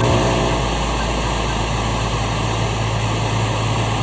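A loud, steady engine-like drone: an even hiss across all pitches over a constant low hum, with no change in pitch or level.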